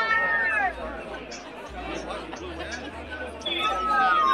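Chatter of several overlapping voices, louder about the first second, dropping to a quieter babble, then rising again near the end.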